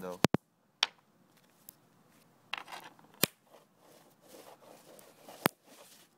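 Nitrogen triiodide, a contact explosive, going off in sharp cracks as it is wiped on the ground: a quick double crack at the start, then single cracks at irregular intervals, the last about five and a half seconds in.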